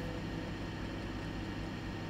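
Steady fan noise and low hum from a running HP 1650A logic analyzer while it loads its operating system.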